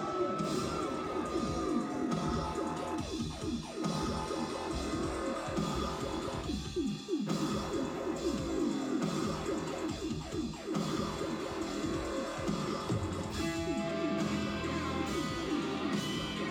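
Live rock band playing a guitar-led passage without vocals, electric guitar strumming over a steady full-band backing.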